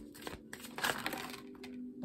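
Oracle cards being shuffled by hand: papery rustling and a few light clicks, thickest about a second in, as cards slip out and drop onto the table.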